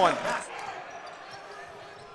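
Faint bounces of a basketball on a hardwood court, over the low, even background noise of an arena.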